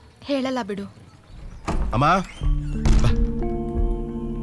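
Two brief spoken phrases, then a single heavy thunk about three seconds in, as soft film score with long held notes comes in.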